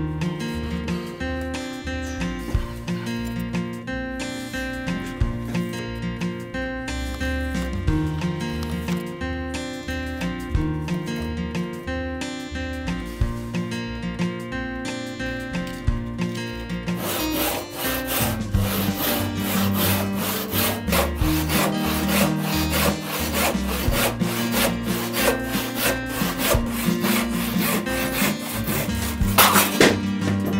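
Background music throughout. From a little past halfway, quick, evenly repeated strokes of a hand tool cutting into a reclaimed barn-timber beam sound over the music, then stop near the end.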